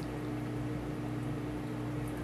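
Steady electric hum of reef aquarium pumps, with a soft hiss of moving water underneath.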